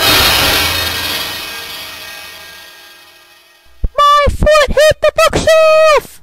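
A sudden loud crash that dies away over about three seconds. Then a high-pitched voice makes a quick run of short notes and ends on a held note.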